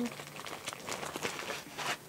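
Plastic packaging crinkling and rustling as it is handled and pulled open, a dense run of irregular crackles that stops sharply near the end.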